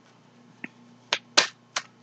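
Three short, sharp clicks in the second half, a fraction of a second apart, after a faint tick.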